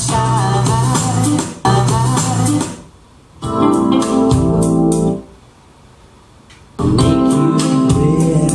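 Pop music with keyboards playing through a pair of JMlab Daline 6 transmission-line floorstanding speakers, picked up in the room. The music drops away twice: briefly about three seconds in, and for about a second and a half a little past the middle.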